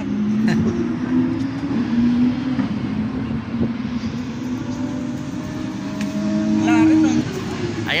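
Motor vehicle engine droning steadily, its pitch wavering slightly, until it fades out about seven seconds in.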